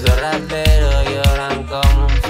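Cachengue-style dance remix of a rap track in an instrumental passage: a heavy, booming kick and bass beat about every 0.6 seconds under a pitched synth line.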